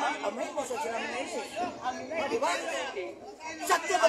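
Men's speech: an animated face-to-face conversation, with a brief pause about three and a half seconds in.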